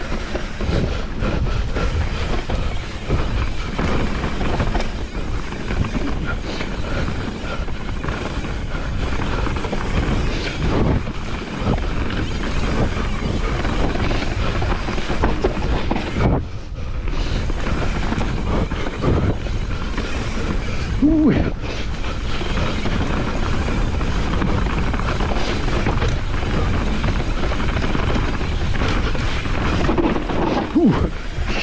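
Mountain bike descending a dirt forest trail: tyres rolling over dirt, roots and stones with continuous rattling and knocking from the bike, over a steady rushing noise. The noise dips briefly about halfway through.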